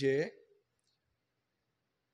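A man's speaking voice trails off about half a second in, followed by near silence.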